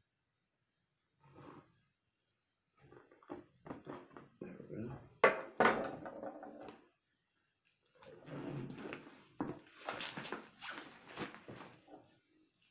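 Plastic shrink wrap being cut and pulled off a cardboard board-game box: a few knocks of the box and knife on a wooden table with two sharp ones about five seconds in, then crinkling plastic for the last four seconds.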